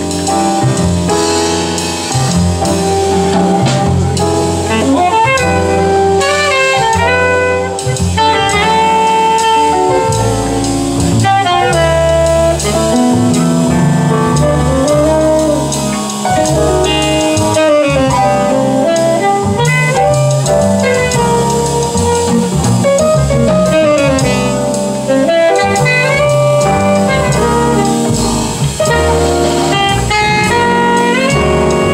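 Live jazz band playing: a tenor saxophone carries a winding melody over digital piano, upright bass, electric guitar and drum kit.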